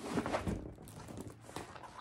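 Faint rustling and crinkling of a diamond painting canvas, covered with a plastic protective film, as it is unrolled and smoothed flat on carpet by hand.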